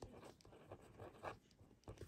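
Faint scratching of a pen writing on paper, in short irregular strokes.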